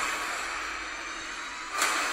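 Film crash sound effects: a steady rushing noise of dust and debris that slowly dies down, then a sudden loud hit near the end.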